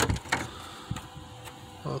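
Handling clicks, a sharp one at the start and a softer one about a third of a second later, from plastic car-dash parts and wiring connectors being moved around. A spoken word begins near the end.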